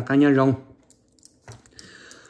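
A man's voice drawing out the end of a word, then a short pause holding a few faint clicks and a soft hiss.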